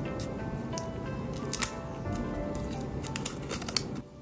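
Background music, with the crinkling and clicking of a thin plastic protective wrap being peeled off a smartwatch: a sharp click about a second and a half in and a quick run of them near the end. The music stops abruptly at the very end.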